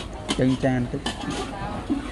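Metal spatula clinking and scraping against a steel wok as stir-fried shrimp is scooped out, a few sharp clinks standing out.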